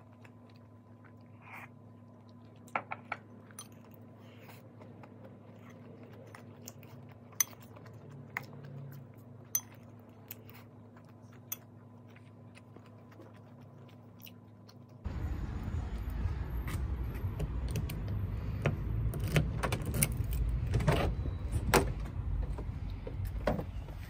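Quiet eating, with a few light clinks of a metal spoon against a ceramic bowl over a low room hum. About fifteen seconds in, it cuts abruptly to louder clatter of keys jangling and being handled in a car's cabin.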